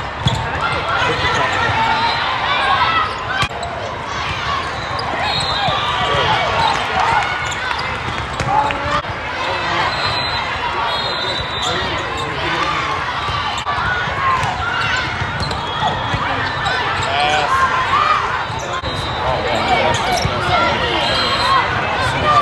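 Volleyballs being struck in a rally, several sharp smacks of ball on hands and arms, over a steady din of many voices talking and calling in a large, echoing sports hall.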